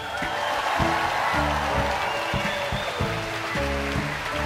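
A large hall audience applauding, over background music with a repeating bass line.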